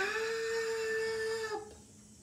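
A woman's voice calling out a long, drawn-out "Stop!", held on one steady pitch for about a second and a half and then cut off.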